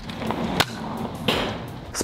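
X-Shot Insanity Manic spring-powered foam-dart blaster being cocked by hand: a sharp plastic click about half a second in, then a short rasping noise a little after the middle, over a faint steady background hiss.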